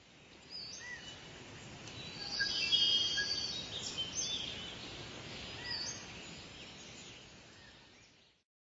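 Birds chirping over a steady outdoor background hiss, the chirps busiest about two to four seconds in. The sound fades in at the start and fades out near the end.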